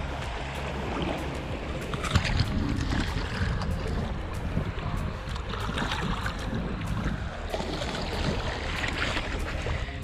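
Small waves washing at the shoreline and wind on the microphone, with water splashing as a snook is let go in the shallows and swims off.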